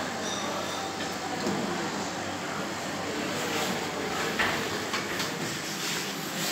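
Kone EcoDisc lift arriving and its automatic stainless-steel sliding doors opening, a steady rolling rumble along the door track. A faint short high tone sounds near the start, and a couple of sharp clicks come in the second half as someone steps into the car.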